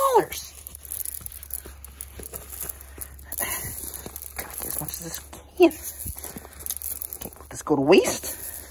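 Shelled corn kernels rustling and clicking as a hand scoops them up and lets them pour back onto the pile. Short bits of voice break in about five and a half seconds in and near the end.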